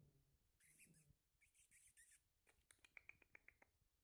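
Faint sounds of a Yorkshire terrier shaking itself on a grooming table: two short rustling bursts, then a rapid run of small clicks, about eight a second, as it shakes its head.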